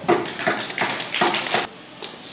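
String quintet playing a run of short, percussive notes, about a dozen in quick succession, that stop shortly before the end.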